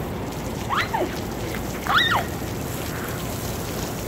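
Water from a street sprinkler spraying steadily onto wet pavement, a constant hiss. Two short high-pitched voice calls rise and fall over it, about one and two seconds in.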